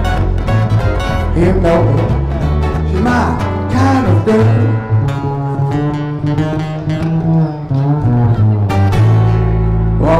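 Live acoustic string band playing an instrumental: acoustic guitar, plucked upright double bass and violin. A single low note is held out near the end.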